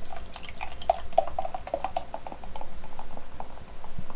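Beer pouring from a glass bottle into a tall glass, the bottle glugging in quick, irregular plops as the foam rises.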